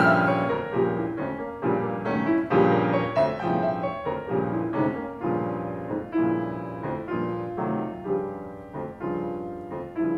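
Grand piano playing a solo passage of classical music, a steady run of struck notes and chords that each ring and decay. A held flute note dies away right at the start.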